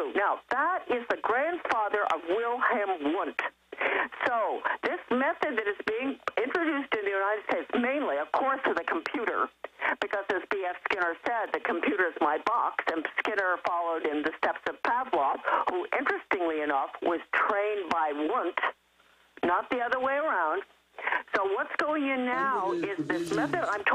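Speech only: a voice talking continuously over a narrow, telephone-quality line, as on a radio call-in broadcast.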